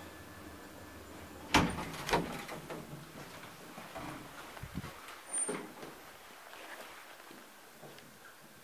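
1975 Valmet-Schlieren traction elevator: the car's low running hum stops with a loud clack about a second and a half in, followed at once by a second clack and some clatter as the doors are opened. A couple of thuds come a few seconds later as the hinged landing door swings shut on its closer.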